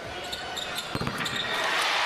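Arena sound during a free throw: a sharp knock of the basketball on the hoop about a second in, then the crowd's cheering swells as the shot goes in.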